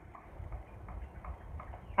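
A handful of faint, irregularly spaced light clicks over a low steady background rumble.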